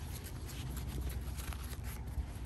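Light rustling and scraping of nylon fabric as a plate carrier's front flap is folded over and pressed down by hand, with a faint low rumble underneath.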